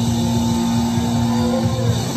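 Live blues-rock band playing, with one long steady note held until near the end over the band.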